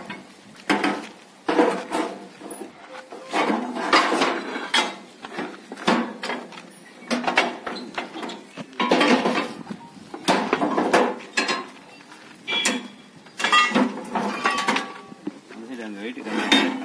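Heavy rusty steel blades clinking and clanking against each other and the metal luggage rack as they are stacked by hand onto a motorcycle's rear carrier, in irregular strokes, some ringing briefly. Background voices chatter throughout.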